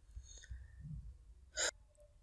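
A person's short, quick intake of breath near the end, over faint room noise.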